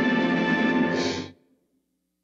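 Orchestral end-title music holding its final chord, which cuts off about a second and a half in.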